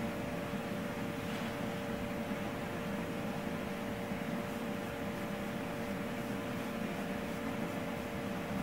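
Steady machine hum and hiss with a faint held tone, unchanging throughout.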